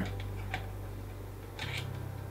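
A few light clicks and a short scrape of a DSLR camera being fitted onto a monopod's ball-head quick-release plate, with a click about half a second in and a brief scrape near the end.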